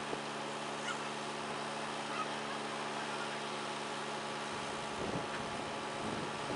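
Farm machinery engine idling with a steady hum that breaks up about four and a half seconds in, with a few short high-pitched calls or squeaks over it.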